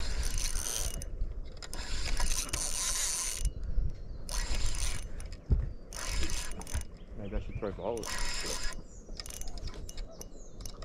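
A spinning reel whirring and ratcheting in repeated bursts of a second or two, the reel working as a hooked fish is fought and wound in. There is one low knock about halfway through.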